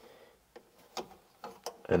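A few faint, sharp clicks and taps, about three spread over two seconds, from a hand handling parts among the hydraulic hoses and fittings of a mini excavator's engine bay.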